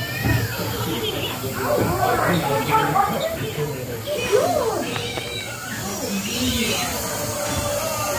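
Themed soundtrack of a castle dark-ride section: short gliding animal cries, cat-like meows among them, mixed with voices.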